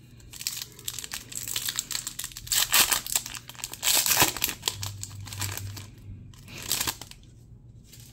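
Foil wrapper of a Bowman baseball card pack being torn open and crinkled by hand, in irregular bursts of crackling that are loudest a few seconds in and die away near the end.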